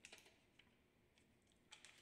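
Faint crackling and rustling of paper being handled, in two short clusters: one at the start and another near the end.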